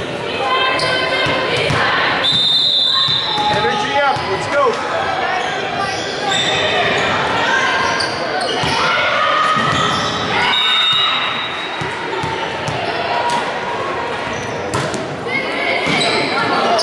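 Echoing gym sound of indoor volleyball play: several voices calling out over sharp hits of the volleyball and thuds on the hardwood court.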